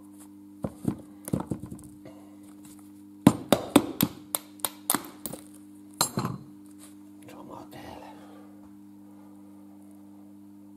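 Metal diesel injector parts knocking and clinking as they are handled and set down on a workbench: a run of sharp taps over about six seconds, busiest in the middle. A steady low hum sits underneath.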